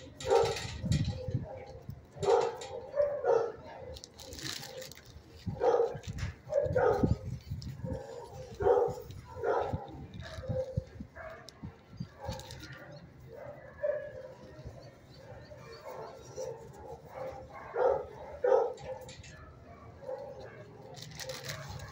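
Dogs barking in short, irregular barks, some coming in quick pairs, spread through the whole stretch.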